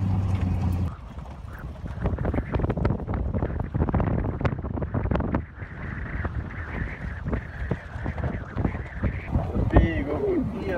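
Off-road truck's engine giving a steady low hum for about the first second, then, after a cut, a dense run of crunches and clicks from tyres rolling slowly over a rocky dirt road, with wind on the microphone. A voice starts right at the end.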